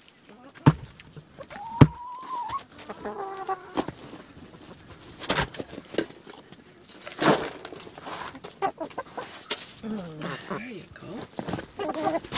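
Hens clucking close by, with a drawn-out call about two seconds in and a run of low clucks near the end, amid sharp taps and rustling from their feet and beaks in the straw.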